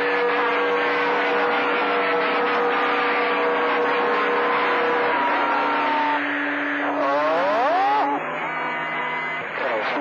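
CB radio receiver on channel 28 picking up skip: loud static with overlapping whistling heterodyne tones, one steady and one sliding slowly down in pitch, over garbled distant voices. About seven seconds in, a brief burst of warbling tones that slide up and down.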